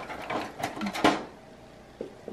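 Clear hard-plastic storage container, cracked into pieces, clicking and clattering as a gloved hand moves it in a cart drawer: five or so short knocks in the first second, then quiet handling.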